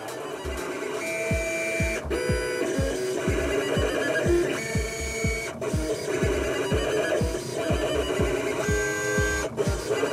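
A vinyl cutting plotter's motors whine in short runs of held tones that jump from pitch to pitch as the cutter head moves, several times. Electronic music with a steady kick-drum beat plays throughout.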